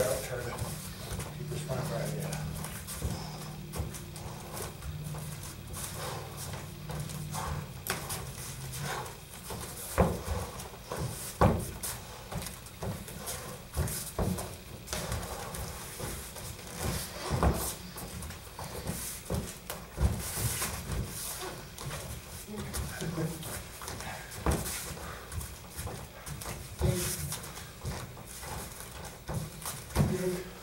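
Light bare-knuckle sparring: bare feet stepping and shuffling on foam mats, and strikes landing on the body, as irregular thuds and slaps. The sharpest come about ten and eleven and a half seconds in.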